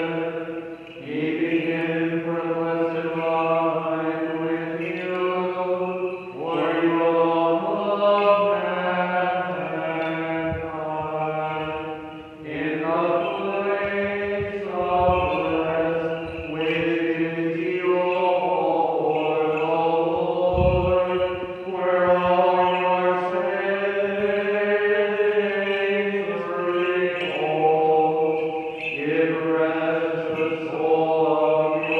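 Unaccompanied male chanting of Byzantine-rite funeral chant: a melody sung in long phrases, with held notes that shift in pitch.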